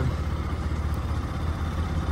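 A motor vehicle's engine running steadily at low speed on a dirt track: a steady low drone.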